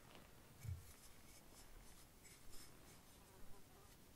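Near silence: quiet outdoor room tone with a soft low thump about a second in and a few faint light scratches or rustles.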